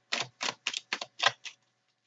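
A deck of tarot cards shuffled by hand: a quick, uneven run of crisp card slaps and riffles, about seven in two seconds.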